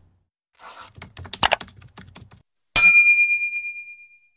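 End-card sound effects: a quick run of scratchy clicks, like a mouse clicking and tapping, then a bright bell-like notification ding that rings with several high tones and fades over about a second.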